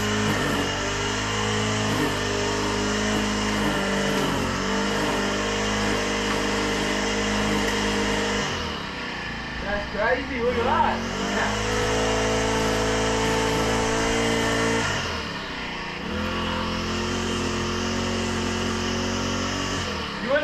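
Petrol walk-behind lawn mower engine running steadily, dipping briefly in level about halfway through and again about three-quarters of the way through.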